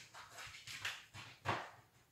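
Small terrier sniffing hard in short, quick, irregular bursts with its nose up against the wall as it pinpoints a hidden target odour.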